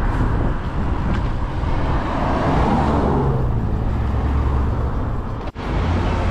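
Steady wind and road noise from riding a bicycle along a road, with a vehicle passing that swells and fades around the middle. The sound breaks off briefly near the end.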